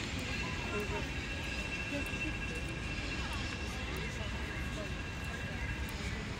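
Outdoor park ambience: faint voices of passers-by and a low steady background hum, with a thin steady high-pitched whine that starts just after the beginning and stops near the end.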